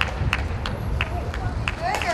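Scattered hand claps from players in a baseball dugout, two or three a second, over a steady low ballpark rumble, with a short shout near the end.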